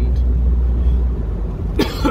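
Steady low engine and road rumble inside a Jeep's cabin, easing off a little over a second in, then a man coughs once near the end.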